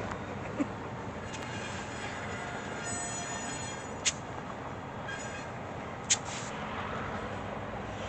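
Diesel freight train of autorack cars moving through a rail yard: a steady rumble with several short, high-pitched squeals from the train, two of them sharp.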